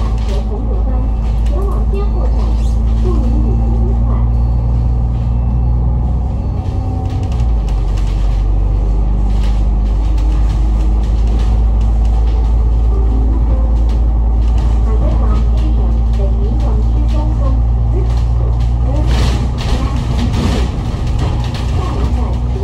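Engine and drivetrain of an Alexander Dennis Enviro500 MMC double-decker bus, heard from the upper deck as it drives: a steady low drone that shifts in pitch about seven seconds in. Short knocks and rattles from the body run through it.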